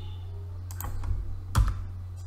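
A few computer keyboard keystrokes, the strongest about one and a half seconds in, over a steady low electrical hum.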